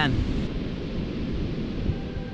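Steady wind rumbling on the microphone, with surf washing on the beach behind it.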